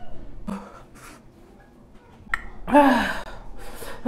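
A woman gasping and breathing sharply through her open mouth, with a short moan falling in pitch about three seconds in: distress from the burn of a Carolina Reaper chili pepper.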